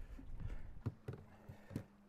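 A handful of light knocks and taps, about six in two seconds, from handling in an aluminum fishing boat as a netted smallmouth bass is brought aboard.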